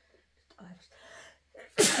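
A person sneezes once, loudly and suddenly, near the end, after some faint breathy sounds.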